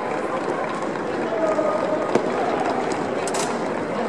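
Steady background crowd chatter, with a few sharp clicks and knocks from drill rifles being handled: one about two seconds in and a quick cluster near the end.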